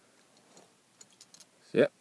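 Near quiet with a few faint, short clicks of fingers handling a small metal die-cast toy car, then a man's voice near the end.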